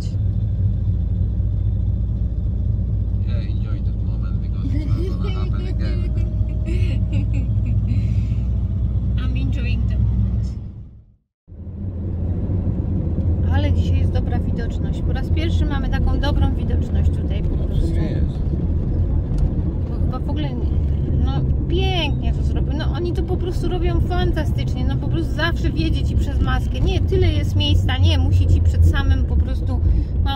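Steady low rumble of a Toyota Hilux being driven in town traffic, engine and road noise heard inside the cab. It cuts out for a moment a little over a third of the way in, then carries on.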